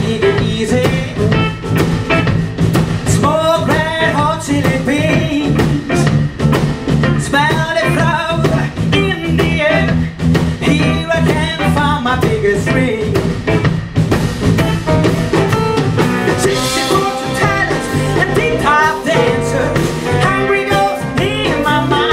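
Live electric blues band playing: electric guitar, bass guitar and drums, with a bending lead melody over the top.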